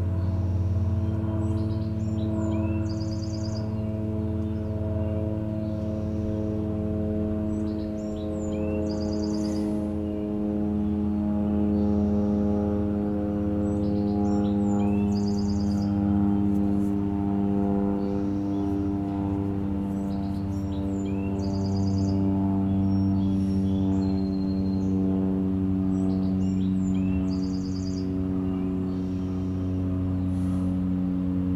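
A steady drone of several sustained low tones, single tones swelling and fading over many seconds. A songbird sings the same short phrase, a slurred note and a quick trill, about every six seconds.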